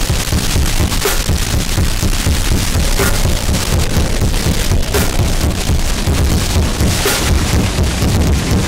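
Noisecore/gorenoise recording: a loud, dense wall of distorted noise over a churning low end, with a sharp hit about every two seconds.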